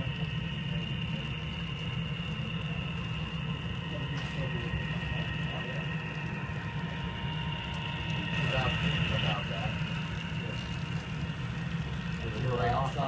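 HO-scale model diesel locomotives hauling a freight train along the layout: a steady low hum with a thin, even high whine.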